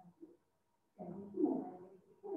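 A pigeon cooing: a faint short note at the start, then a longer low coo in the second half.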